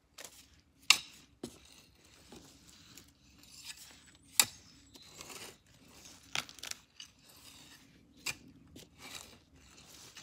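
Close-range rustling and crunching from handling right beside the microphone, broken by about five sharp clicks, the loudest about a second in and a few seconds later.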